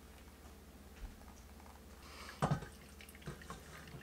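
Hot water poured from a stainless steel kettle into a Chemex's paper filter, a faint trickle. About halfway through comes a single knock as the kettle is set down on the wooden counter, followed by a couple of light taps.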